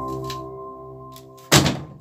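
Soft background music with held notes fading out. About one and a half seconds in comes a single loud thunk, the lid of a Samsung top-loading washing machine being shut.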